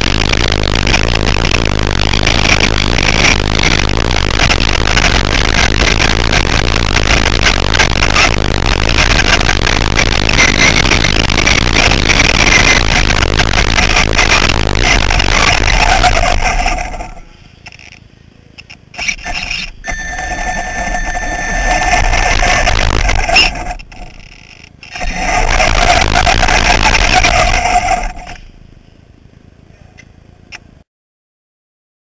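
Onboard sound of a Traxxas Slash RC short-course truck racing on dirt: a loud, steady rush of motor, drivetrain and tyres for about the first seventeen seconds. Then it drops away to near quiet, broken twice by a few seconds of electric motor whine as the truck picks up speed again.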